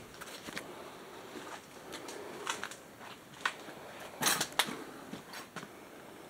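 Footsteps crunching and clicking on grit and debris on a hard floor, a handful of short irregular crunches with the loudest pair about four and a half seconds in.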